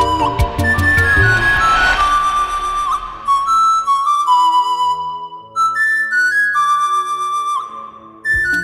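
A flute playing a melody of held and sliding notes, with low drum beats under it in about the first second. The melody thins to sparse, separated notes in the second half.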